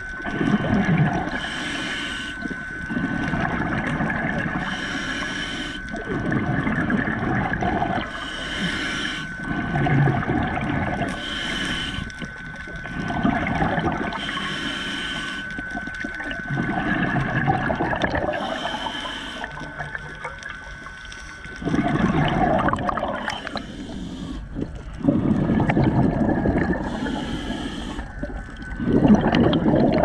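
Scuba diver breathing through a regulator underwater: a short hissing inhale followed by a longer rumbling gush of exhaled bubbles, repeating every three to four seconds. A thin, steady high tone runs under most of it.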